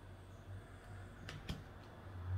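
Two quick sharp clicks, about a fifth of a second apart, as a tarot card is set down, over a low steady room hum.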